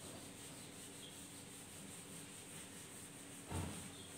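Quiet rubbing of a whiteboard eraser wiping writing off a whiteboard, with one short thump about three and a half seconds in.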